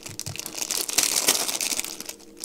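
Small clear plastic bag of power transistors crinkling as it is turned over in the fingers, a crackly rustle that gets louder about halfway through.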